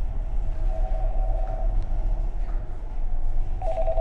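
Marine VHF radio (Furuno FM-8800S) sounding its DSC incoming-call alert: a warbling electronic tone about a second long, then again near the end. This signals that the DSC acknowledgement has been received. A steady low hum runs underneath.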